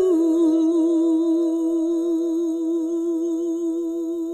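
A woman's singing voice holding one long note with a steady vibrato over a sustained accompanying chord, slowly dying away.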